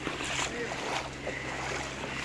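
Feet splashing through shallow floodwater, with spray thrown up at each stride, over a steady low hum.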